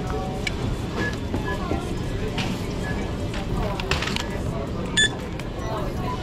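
Checkout-lane electronic beeps: several faint short beeps and one loud, sharp beep about five seconds in, over a background of store music and voices.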